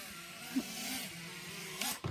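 Faint, steady buzz of FPV racing quadcopters flying at a distance, over a steady hiss.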